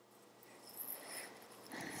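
Faint soft rustling of hands handling a stuffed crocheted yarn cushion, with a few light scuffs about a second in and again near the end.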